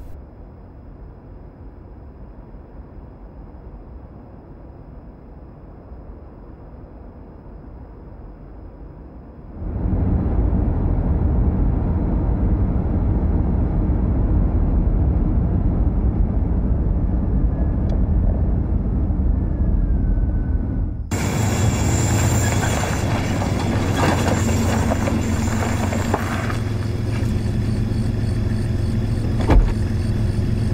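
Faint low rumble at first. About a third of the way in it gives way suddenly to a car's engine and road noise, steady and heard from inside the cabin while driving. About two-thirds of the way in it changes abruptly to an SUV driving on an unpaved road, heard from outside, with a fuller hiss of tyres and engine.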